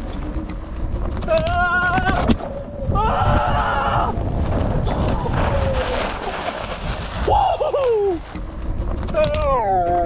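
Wind on the microphone and the tyre of a Floatwheel ADV Pro self-balancing board rolling over a steep dirt hill. Short wordless calls from a voice come several times, and two sharp clicks sound a couple of seconds in.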